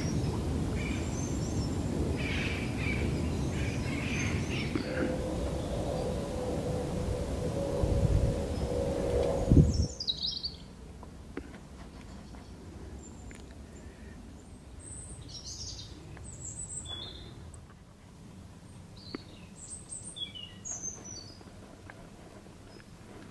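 Rover P6 2000's four-cylinder engine running as the car drives by: a low rumble that grows louder and then cuts off suddenly about ten seconds in. Birds chirp throughout and are the main sound in the quieter second half.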